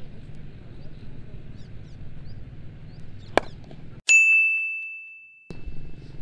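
A single sharp knock over faint outdoor background noise. About four seconds in, the background drops out and a bell-like ding sound effect rings high and fades over about a second and a half.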